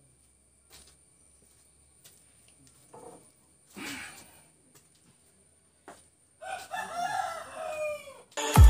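A rooster crowing once, for over a second, starting about six and a half seconds in, in a rising then falling call. Before it there are a few faint knocks and a short noisy rush about four seconds in.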